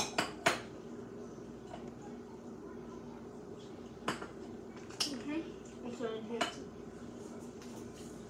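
Kitchen utensils and dishes being handled: sharp clinks and knocks, a quick group right at the start with the loudest about half a second in, then a few more between about four and six and a half seconds.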